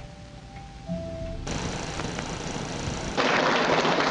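Abruptly spliced film soundtrack: a few brief held musical tones in the first second and a half, then a steady hissing noise that jumps suddenly louder about three seconds in.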